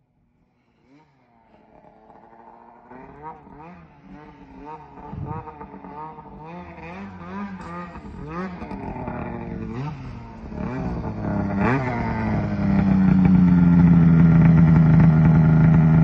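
A snowmobile engine approaching through deep snow, revving up and down in quick repeated bursts. It grows steadily louder until it is close and running loud and steady near the end.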